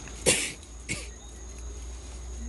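A person coughing twice, the first cough loud and the second shorter and weaker.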